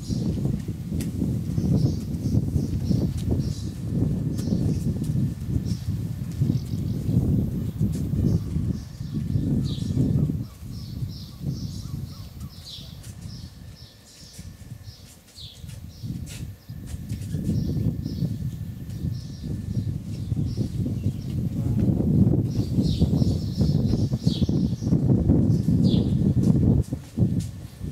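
Small birds chirping over a low, gusting rumble that eases off for a few seconds in the middle.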